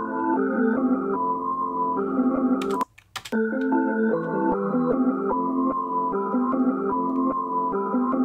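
A chopped trap/R&B melody loop playing back in FL Studio through the Gross Beat plugin, in a steady stepped rhythm. Playback cuts out for about half a second roughly three seconds in, then starts again.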